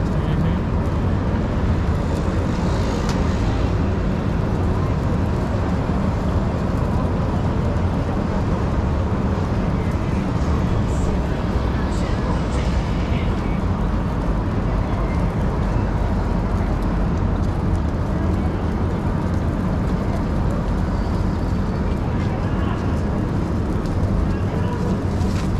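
Busy city sidewalk ambience: passersby talking and street traffic, over a steady low rumble from the electric scooter rolling along.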